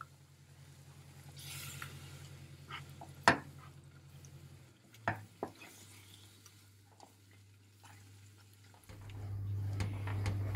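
Wooden spoon stirring thick pumpkin halva in a nonstick pan, with a faint sizzle as syrup is poured into the hot toasted flour and butter. There are a few sharp knocks of the spoon against the pan, the loudest about three seconds in. A low steady hum runs underneath and grows louder near the end.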